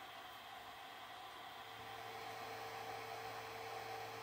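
Faint, steady hum and hiss from an idle Creality Ender-3 3D printer that is powered on after finishing its print, with its cooling fans running.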